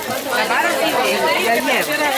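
Many people talking at once, unintelligibly: the steady chatter of a crowd of shoppers and vendors packed around market stalls.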